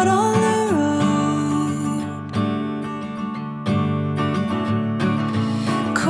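Background music led by acoustic guitar, with a melody line that bends in pitch in the first second.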